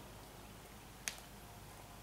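Quiet background with a single sharp click about a second in.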